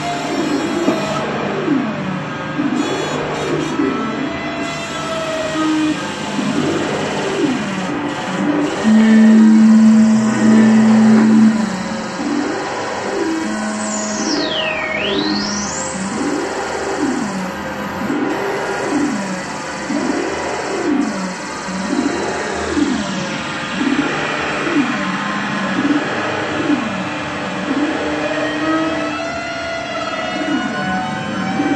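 Experimental electronic music: low synthesized pitch sweeps that fall and rise over and over, about once a second. About nine seconds in, a loud steady low note holds for a couple of seconds, and a little later a high whistle dives down and climbs back up.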